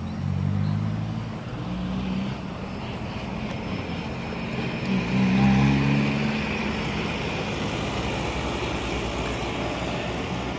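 Motor vehicle engines passing, swelling louder twice, near the start and about halfway through, over steady outdoor traffic noise.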